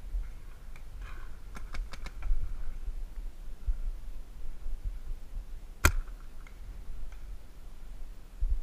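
Sharp cracks of paintball markers firing: a quick run of four or five shots about one and a half to two seconds in, then one louder single shot near six seconds, over a low rumble.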